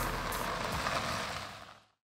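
A Hyundai SUV driving past on a gravel road, its tyres crunching over the gravel along with the engine. The sound fades out and is gone shortly before the end.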